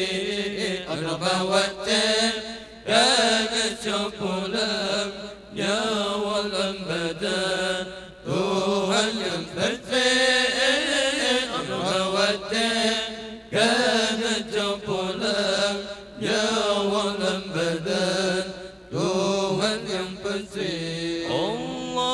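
A male voice reciting the Quran aloud through a microphone in a melodic, chanted style, with long ornamented phrases and short breaks for breath between them.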